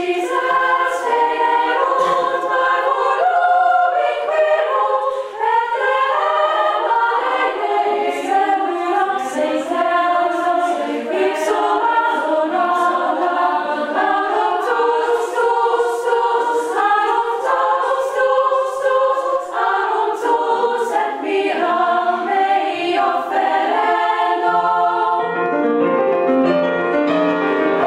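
A choir of girls' and women's voices singing a part-song together, the voices moving from note to note in several parts.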